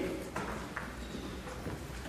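A few faint knocks and shuffling over low room noise, typical of a congregation getting to its feet.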